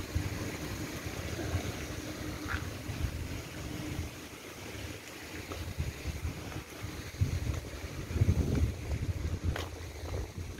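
Wind buffeting the microphone in irregular low gusts, strongest about seven to nine seconds in, over a faint steady hum.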